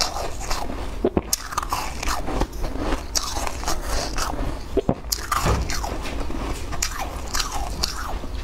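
Close-miked crunching and chewing of a mouthful of crisp shaved ice, with many irregular sharp crunches.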